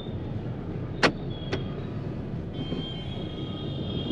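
Steady low rumble of a car on the move, heard from inside the cabin. Two sharp clicks come about a second in, and a faint thin high tone sounds through the second half.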